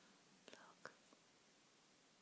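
Near silence: room tone with three faint, short clicks or rustles about half a second to a second in.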